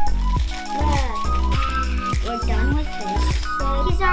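Upbeat background music with a steady beat, bass line and bright held notes.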